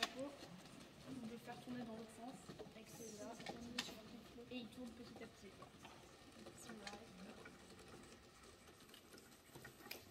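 Faint murmur of voices in a quiet room, with a few small clicks and taps.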